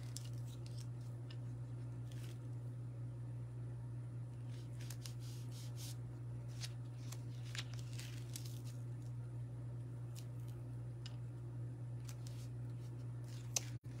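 Faint, scattered rustling and crinkling of a plastic mesh stencil sheet being peeled from its sticky backing and handled, over a steady low hum.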